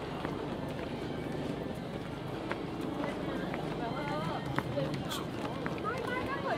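Footsteps climbing outdoor stone stairs among a crowd, with voices chattering around them and a voice rising up near the end.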